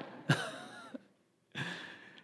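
A man's short, breathy laugh, followed near the end by a fainter breath.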